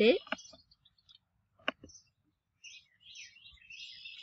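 Mostly quiet: a single computer mouse click a little before halfway, then faint, scattered high chirps through the last second or so.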